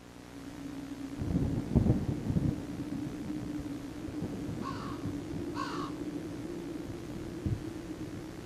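Ambient outro sound: a low rumble like distant thunder with a steady low hum and several heavy thumps in its first few seconds, and two short harsh calls, like a crow cawing, about a second apart midway through.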